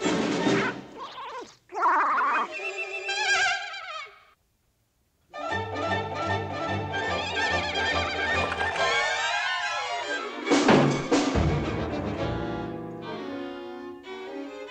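Orchestral cartoon score. It stops for about a second a little after four seconds in, then plays on, and a sudden loud thud lands about ten seconds in.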